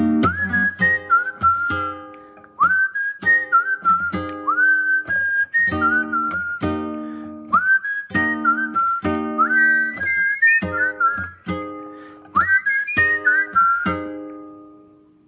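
Acoustic guitar picked in chords, with a whistled melody over it in short phrases that each slide up into their first note.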